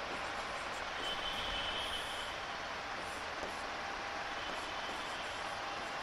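Steady background hiss with no distinct events, and a faint high tone for about a second near the start.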